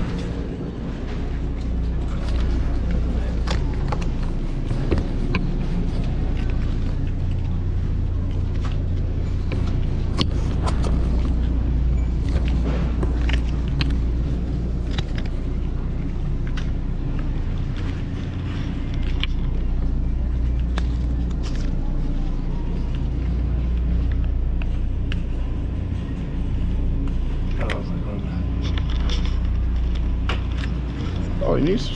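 Supermarket aisle ambience: a steady low rumble with frequent light clicks and rattles throughout, under indistinct background voices.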